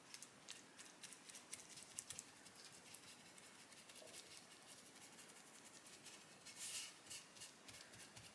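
Faint scratchy rubbing of a paper shop rag wiping boiled linseed oil onto the wooden headstock of a tulip poplar guitar neck, a little louder near the end.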